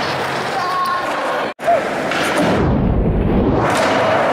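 Skateboards rolling and board impacts on a hard gymnasium floor, echoing in the large hall, with people talking in the background. The sound cuts out sharply about a second and a half in, then picks up with a low rumble.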